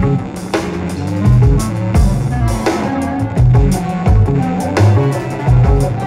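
Instrumental jazz played by a full band: a drum kit keeps a loose beat with deep kick-drum strikes and cymbals over a guitar and sustained low bass notes.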